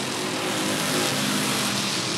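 Race car engines running at speed around a short asphalt oval, heard at a distance as a steady drone.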